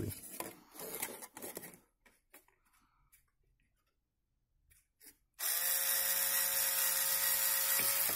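Hands handling and pressing a plastic bottle cap onto a plastic half tube for about two seconds, then a pause, then a small electric motor spins up about five seconds in and runs steadily.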